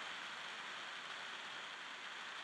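Faint steady hiss with no distinct events: background room tone in a pause between words.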